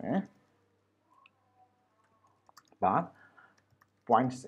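Faint computer-keyboard keystrokes, a few scattered clicks, as a line of code is typed. Two short bursts of a voice break in, one at the start and one about three seconds in.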